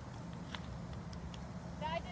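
A steady low rumble of open-air noise on the microphone, with a few faint scattered clicks and a brief voice starting near the end.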